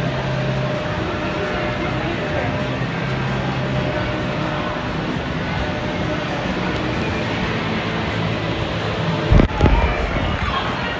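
A steady rush of outdoor noise with a faint low hum under it, and a loud low thump about nine seconds in.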